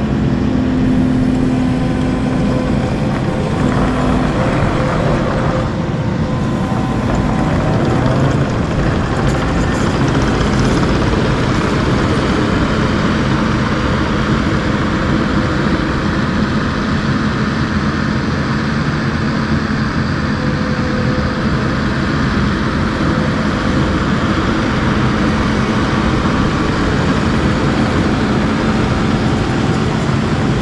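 Kubota SVL compact track loader's diesel engine running steadily as the machine drives on its rubber tracks.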